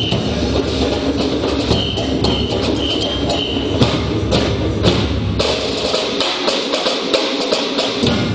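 Percussion ensemble drumming: large shoulder-slung bass drums and other drums under a fast clatter of stick and block-like clicks, with a few short high steady notes in the first half. Near the end the bass drums drop out for about two seconds, leaving only the higher clicking.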